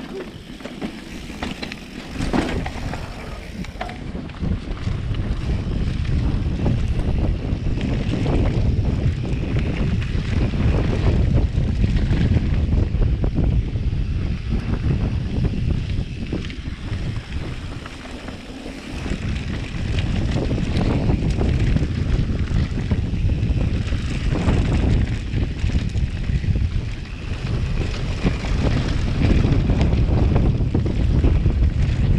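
Wind buffeting the microphone of a mountain biker's point-of-view camera on a fast descent, with tyres rolling over a dirt trail and repeated knocks and rattles from the bike over bumps. The rumble builds a few seconds in and eases briefly a little past the middle.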